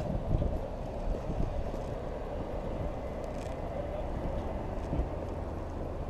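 A steady low outdoor rumble picked up by a moving camera's microphone, with a few faint knocks.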